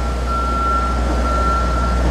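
Steady low diesel-engine rumble of a construction boom lift manoeuvring, with a steady high-pitched tone over it.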